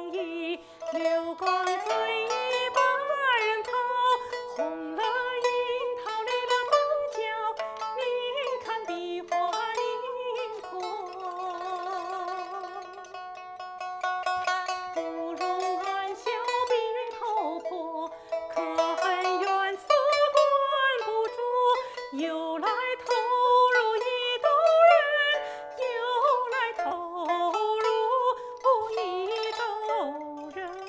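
A woman singing Kunqu opera, accompanied by the plucked strings of a pipa. Around the middle she holds one long note with a wide vibrato.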